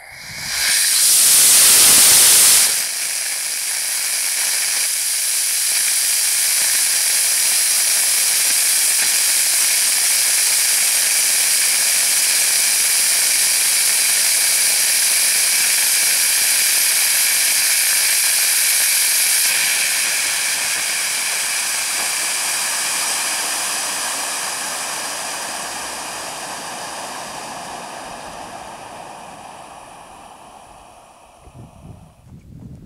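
Homemade solid-fuel model rocket motor firing on a static test stand: a sudden, loud first two seconds or so from its Bates-core grain, then a long steady hiss as it burns on as an end burner, fading away over the last ten seconds. The hiss is long but weak because the nozzle is too large for the end-burning phase, giving very little thrust.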